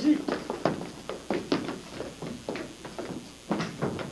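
Footsteps and short knocks on a stage floor as several people move across it, irregular, with faint voices.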